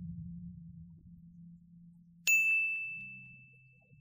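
A single bright bell ding about two seconds in, ringing out and fading over a second and a half: the notification-bell sound effect of a subscribe-button animation. Before it, the song's last low notes die away.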